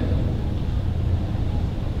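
A steady low rumble with a faint hiss above it, with no voice.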